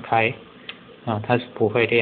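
A man talking, with one small, sharp click during a pause about a third of the way in: a slide switch on the DE2-70 FPGA board flicked by a fingertip.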